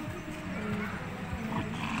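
A bull lowing low and soft, with faint voices in the background.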